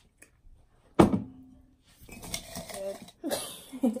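A drinking glass set down on a table about a second in: one sharp knock with a short ring. Then paper rustling as a small folded slip is pulled out and unfolded, with soft voices.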